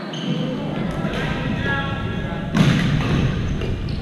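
Badminton play in a busy hall: players' voices chatter and call throughout, over thuds and racket hits from the courts. A louder, sudden hit comes about two and a half seconds in.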